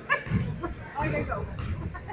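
Basketball shoes squeaking on a gym floor during play, several short high squeaks over the murmur of voices in the hall.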